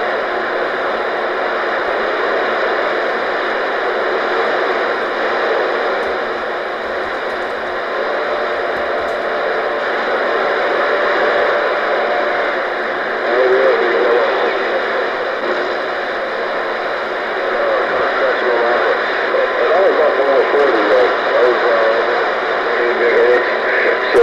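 CB radio receiver hissing with loud, steady band static, rough band conditions, with faint, garbled distant voices breaking through the noise about halfway through and again near the end.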